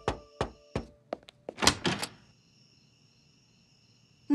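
Knuckles knocking three times on a wooden door, a cartoon sound effect. A few lighter clicks and a louder clatter follow about a second and a half in.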